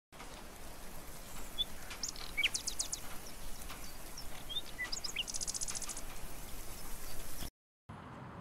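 Songbirds chirping outdoors over a steady background hiss: scattered short high calls and two quick runs of rapidly repeated high notes. The sound cuts off abruptly just before the end.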